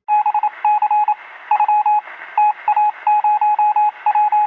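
A Morse-code style beeping sound effect: a single steady tone keyed on and off in a rapid, irregular string of short and longer beeps over a faint hiss.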